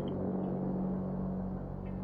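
A steady low hum or drone, easing off slightly toward the end.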